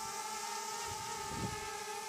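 DJI Mavic Air quadcopter flying low, its motors and propellers giving a steady whine: two held tones, one an octave below the other, with only a slight wobble.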